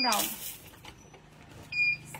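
A single short, high electronic beep near the end, after a brief hiss at the start.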